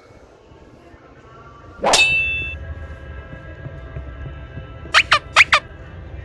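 A single loud metallic clang about two seconds in, its ringing tones dying away over about a second, followed near the end by four quick high squeaks, each falling in pitch.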